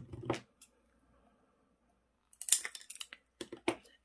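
A clear plastic drinking straw being worked by hand on a tabletop. A soft knock comes at the start, then a quick run of crisp plastic clicks and snips a little past halfway, and two more sharp clicks near the end.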